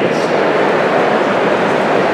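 Steady, loud background noise with no distinct events, the poor-quality sound of a talk recorded in an exhibition hall.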